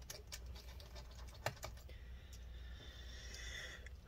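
A few light, scattered clicks of a small Torx screwdriver and screw against a laptop's metal bottom cover, the sharpest about one and a half seconds in, then only a faint hiss.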